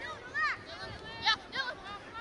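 Several short, high shouts and calls from voices across an open soccer field, none of them close; the loudest comes a little past halfway.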